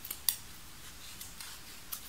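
Small scissors snipping through the threads of a braided friendship bracelet: two sharp snips just after the start, the second louder, then a few fainter clicks of the blades.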